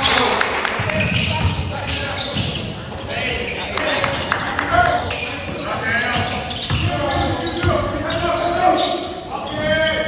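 Basketball dribbled and bouncing on a hardwood gym floor, with indistinct voices of players and spectators echoing in the hall.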